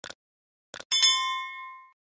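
Subscribe-button animation sound effect: two quick pairs of mouse clicks, then a bright bell ding just under a second in that rings and fades over about a second.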